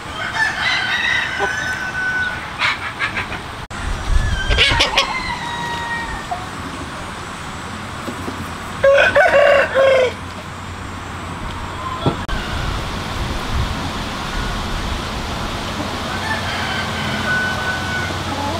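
Flock of Hmong black-meat chickens clucking and calling. A rooster crows about nine seconds in, the loudest sound, and shorter calls come before it and near the end.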